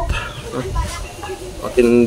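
A man's voice speaking in short, broken phrases with pauses between them, over a low background rumble.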